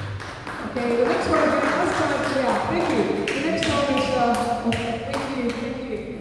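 Voices talking, with a handful of short sharp taps scattered through the middle.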